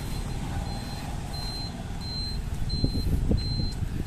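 A thin, high-pitched beep repeating about every half second over a steady low rumble, with a few dull thumps about three seconds in.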